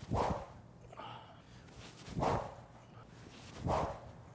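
Three short, loud whooshes, about a second and a half apart, from a SuperSpeed Golf overspeed training stick swung hard at full speed.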